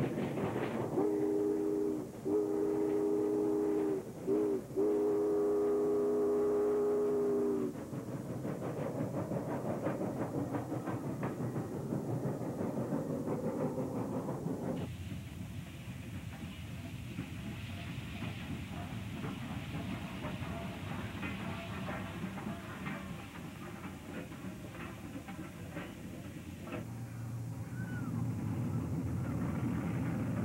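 Union Pacific steam locomotive whistle sounding several notes at once in four blasts: long, long, short, long, the grade-crossing signal. Then the rumble and exhaust of the working locomotive and train, which changes abruptly about halfway through and again near the end, with faint rhythmic ticking between.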